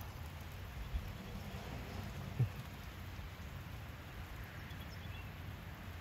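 Steady rain falling outdoors, with one short, louder low sound about two and a half seconds in.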